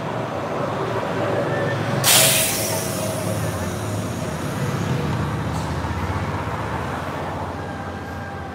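Street traffic with a bus engine running low. About two seconds in there is a sudden loud hiss of air that fades over about a second: a bus's air brakes releasing.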